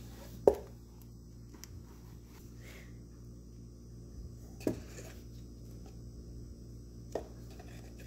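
Handling noise from a foam LARP dagger being turned over in the hands: three short knocks, the loudest about half a second in and two softer ones later, over a faint steady hum.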